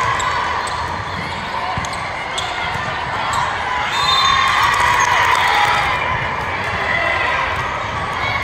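Indoor volleyball rally in a large gym: the ball is struck a few times and players and spectators call out over a steady crowd murmur. The voices are loudest about halfway through.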